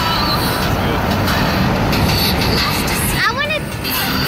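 Road and wind noise inside a moving car's cabin, under children's voices. Near the end there is a short squeal that rises in pitch.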